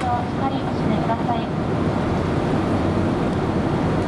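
Steady engine and airflow noise in the cabin of a Boeing 787-8 airliner in flight. A cabin crew announcement over the PA speakers is heard for about the first second and a half, then breaks off into a pause.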